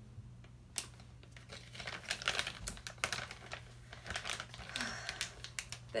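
Crinkling and rustling of packaging being handled, with scattered small clicks and taps, starting about a second in after a brief lull.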